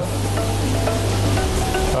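Salt water circulating through oyster depuration tanks: a steady rushing noise with a low hum that weakens about one and a half seconds in, under faint background music.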